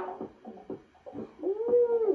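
The music turns muffled, as if filtered, leaving only sparse beat ticks. About a second and a half in, a long voice-like 'ooh' swoops up and holds.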